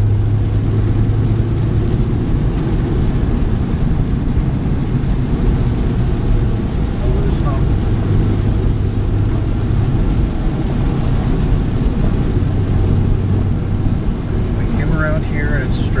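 Steady low drone of a car driving along a wet road, heard from inside the cabin.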